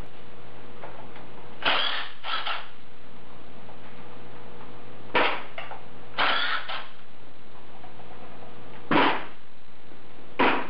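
Cordless impact tool hammering bolts loose on the engine in about six short bursts, each under half a second, a few seconds apart.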